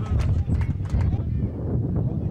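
Men's voices calling out on a football pitch, with a quick run of sharp clicks over the first second and a steady low rumble underneath.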